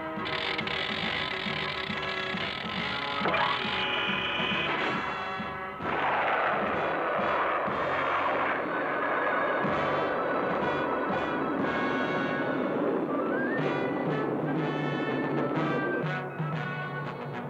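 Orchestral background music with brass. About six seconds in, a steady rushing rocket-engine sound effect joins the music as a cartoon rocket ship flies off, and it fades again near the end.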